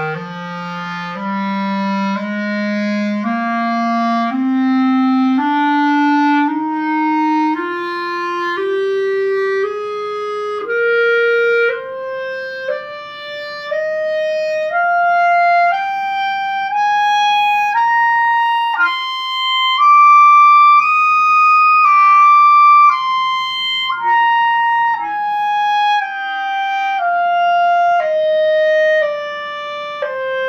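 Clarinet playing a slow three-octave F scale, one held note about every second. It climbs step by step from the low register to a sustained top note about twenty seconds in, then starts back down.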